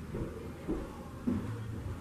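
Quiet room background with a low, steady rumble and no speech.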